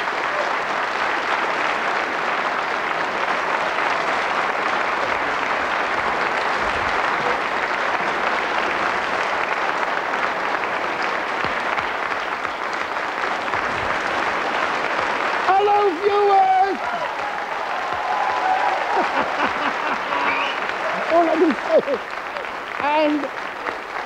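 Studio audience applauding steadily as the guests are introduced. In the second half, men's voices are heard over the applause.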